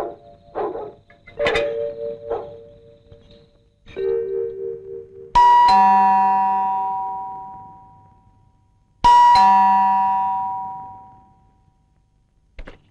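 Background film music with short pitched notes, then a ding-dong doorbell chime rings twice, about four seconds apart, each two-note chime ringing on for a couple of seconds.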